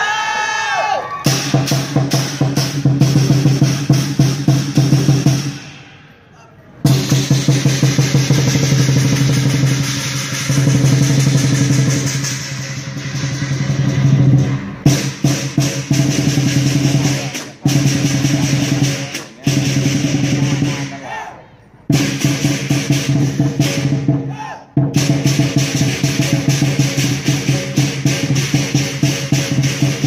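Chinese lion dance percussion: a large lion drum beaten in fast rolls, with clashing cymbals and gong. It plays continuously and cuts off for a moment several times, the longest stop about six seconds in.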